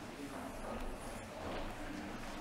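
A congregation exchanging the peace: a low murmur of distant voices mixed with shuffling footsteps as people move about the pews.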